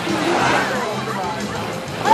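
Voices mixed with background music.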